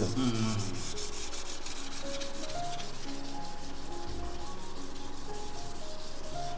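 Sandpaper rubbed back and forth along a bamboo flute tube in quick, even strokes, sanding the bamboo smooth.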